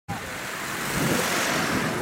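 A car driving past at close range, its road noise growing louder as it comes near.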